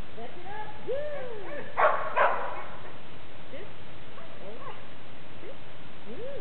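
A dog whining, a string of short whines that rise and fall in pitch, with two short harsh sounds close together about two seconds in.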